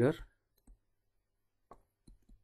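Stylus tapping on a tablet screen while handwriting: two faint, short clicks about a second apart, after a spoken word ends.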